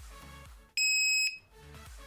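Laser projection keyboard's power-on beep: a single loud, high electronic beep about half a second long, near the middle.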